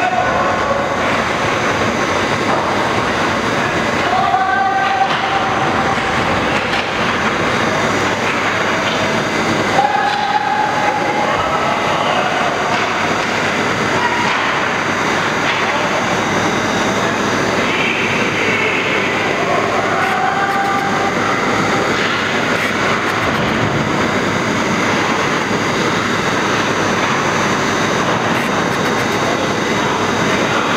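Steady loud noise in an indoor ice hockey rink during play, with a few brief shouts from the players or spectators.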